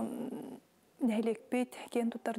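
A woman talking, with a short pause in the middle.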